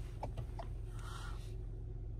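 Steady low hum inside a car cabin, with a few faint clicks in the first half-second as dashboard buttons are pressed.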